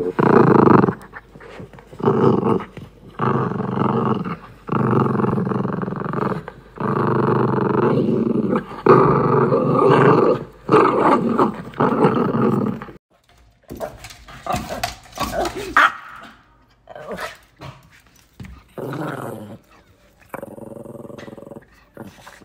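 A dog growling in long, drawn-out growls of a second or two each, steadily for about the first thirteen seconds, then only quieter, scattered sounds.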